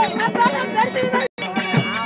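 Therukoothu street-theatre music: regular hand-drum strokes over a steady drone, with a wavering melody line and bright metallic ringing. The sound drops out for a split second a little after halfway.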